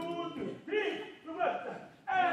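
Speech: a man's voice calling out short words in three brief bursts.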